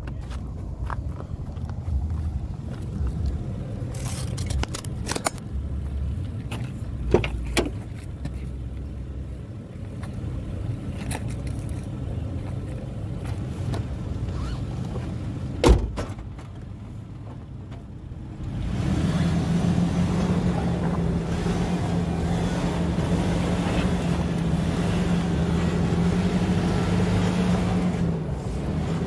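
Camera handling noise and scattered clicks, then one sharp knock about 16 seconds in as the driver's door of the Nissan Pathfinder shuts. From about 19 seconds the Pathfinder's 3.5-litre V6 runs steadily and louder with a constant low drone as the SUV works slowly over the rock obstacle.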